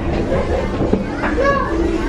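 Indistinct chatter from a crowd of people close by, with children's voices calling and playing among them.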